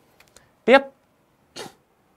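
Mostly speech: a man says one short word ("Tiếp", next) with a rising pitch, followed by a brief breathy puff of noise about a second later.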